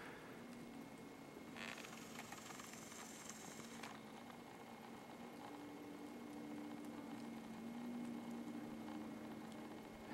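Faint, near-quiet background hiss with a soft rustle lasting about two seconds, starting about a second and a half in, and a faint steady hum underneath.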